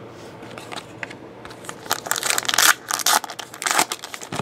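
A trading card pack wrapper being torn open and crinkled. After a quiet start, a run of loud crackly rustles fills the second half.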